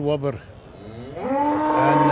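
Shorthorn cattle mooing: the tail of one call at the start, then, about a second in, a long, loud moo that rises in pitch and holds.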